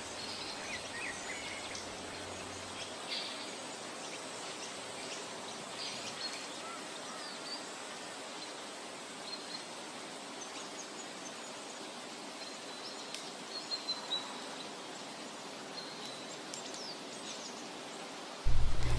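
Faint outdoor ambience: a steady low hiss with scattered short, distant bird chirps and a few soft ticks about three-quarters of the way through.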